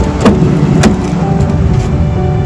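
Background music over the sharp clicks of a Volvo's driver-door handle and latch as the door is pulled open, twice: about a quarter second in and just under a second in.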